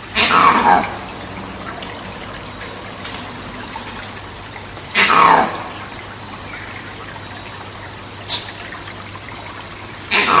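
Monkey screams: loud cries that fall in pitch, each under a second long, coming about every five seconds. There are two, plus the start of a third at the very end, over a steady rainforest background hiss. A brief, thin high sound comes shortly before the last cry.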